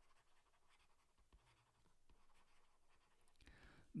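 Near silence with faint scratching and tapping of a stylus writing on a tablet.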